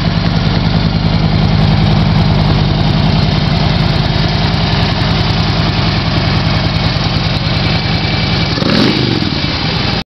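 A 2008 Harley-Davidson Street Glide's Twin Cam 96 V-twin idling steadily through aftermarket Screaming Eagle pipes, with an even, low firing pulse.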